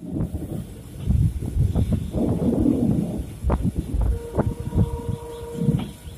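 Indian passenger train running along the track as it enters a station, heard from an open coach door: a continuous low rumble with repeated wheel clicks over the rail joints. A steady tone rings for about two seconds near the end.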